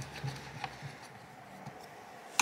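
Faint handling sounds from a desktop PC's open case: a few soft ticks and rubbing as a small Phillips screwdriver and hands finish fastening an M.2 SSD's retaining screw and move away, over a low steady hum.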